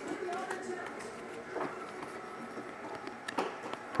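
Trading cards being handled: soft sliding and scattered light clicks and taps as a stack of cards is squared and sorted on a felt mat.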